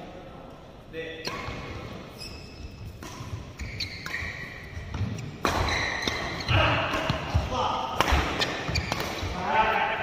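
Badminton doubles rally in a large indoor hall: rackets striking the shuttlecock in a series of sharp hits, with footfalls on the court and players' voices calling out, busier and louder in the second half.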